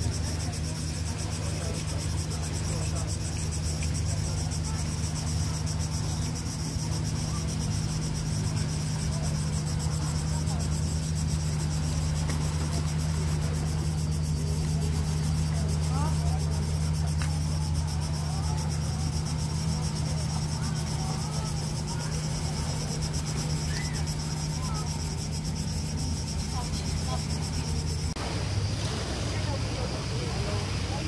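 Cicadas buzzing steadily over a low, even engine-like hum, with faint distant voices; the low hum shifts near the end.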